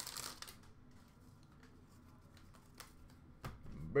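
Trading cards being flipped through by hand: a brief rustle of card stock at the start, then faint, scattered light clicks of card against card.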